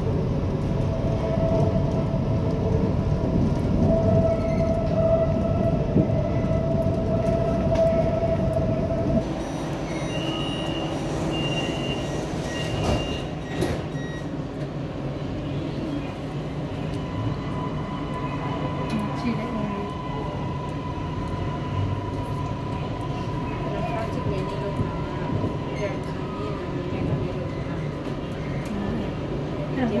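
Metro train running on an elevated track with rumble and a steady motor whine, growing quieter about nine seconds in as it pulls into a station. Three short high beeps of the door signal follow, and from about seventeen seconds a steady, higher whine runs under the rumble.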